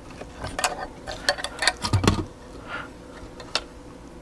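Small metal parts, a steel carriage bolt and a magnet, clicking and tapping against a hollow ABS plastic toilet flange as they are handled. The light clicks come in an irregular cluster through the first two seconds, with a soft knock about two seconds in and one more sharp click near the end.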